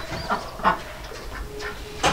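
Ducks calling softly: two short calls close together in the first second, then a fainter low one later.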